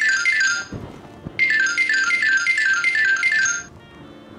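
Mobile phone ringtone: a high electronic melody of quick falling note pairs, repeated in bursts of about two seconds with a short pause between them.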